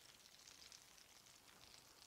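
Faint, steady sizzling and crackling of hot oil as battered dill pickle spears on sticks deep-fry in an electric skillet.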